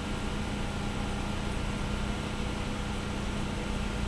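A steady low hum with a hiss over it, unchanging throughout: background room noise with no speech.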